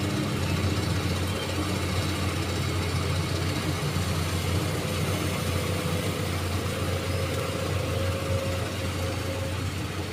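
Komatsu hydraulic excavator's diesel engine running steadily while the machine lifts a bucket of canal sediment and swings it toward the bank, with a faint steady whine joining about four seconds in and fading out near the end.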